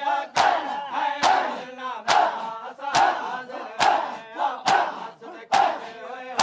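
A crowd of men doing matam, striking their chests with their open hands in unison, seven strikes a little under a second apart, with a shouted mourning chant between the strikes.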